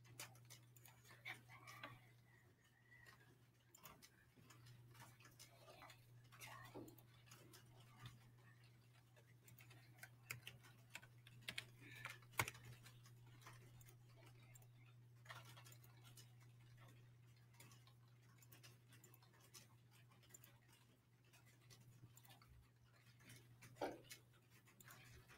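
Near silence: room tone with a low steady hum and faint scattered clicks.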